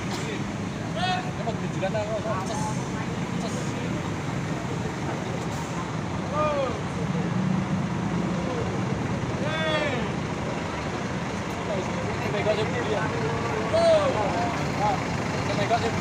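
Tri-axle coach bus's diesel engine, fitted with a racing exhaust, running at low speed as the long coach creeps out of a parking spot. Short shouted calls from people guiding it sound over the engine.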